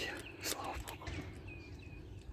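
Cat crunching dry kibble, a few short crunches, the clearest about half a second in. A bird chirps faintly in the background near the end.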